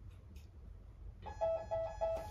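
An electronic alarm beeping: one high tone repeated evenly about four times a second, starting a little past halfway, over low room rumble.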